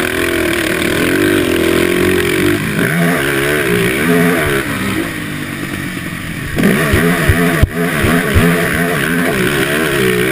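Quad (ATV) engine heard from the rider's helmet, revving up and down as the rider works the throttle around the track, its pitch rising and falling. Past the middle it gets louder, with a few low thumps as the quad crosses a row of dirt bumps.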